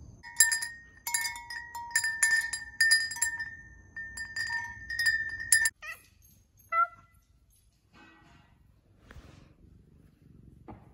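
Wind chimes ringing, struck again and again at an uneven pace, with clear tones that cut off abruptly after about five and a half seconds. A cat then gives short meows, the loudest just before seven seconds in.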